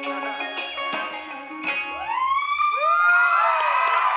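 Acoustic guitar strumming the closing notes of a song, then, about halfway through, a live audience begins cheering with loud, rising-and-falling whoops.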